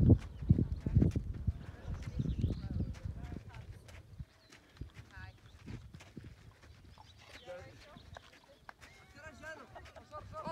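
Camels walking on a stony desert track: low thudding footfalls, loudest in the first few seconds, then fainter, with riders' voices chatting faintly in the background.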